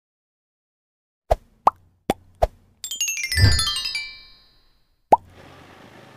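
Edited-in cartoon sound effects: four quick plops about a second in, then a falling musical sweep with a low boom that rings out, and one more plop about five seconds in.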